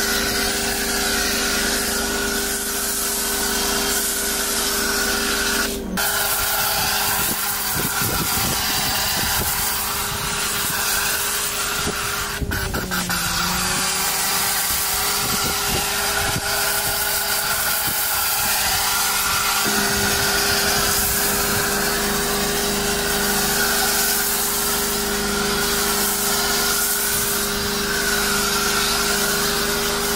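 Pressure washer running: a steady motor hum under a hiss of spraying water. The hum dips briefly in pitch about thirteen seconds in, and the sound cuts off abruptly right at the end.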